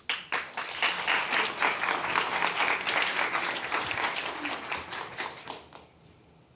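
Live audience applauding, a dense patter of many hands that swells within the first second, holds, then dies away near the end.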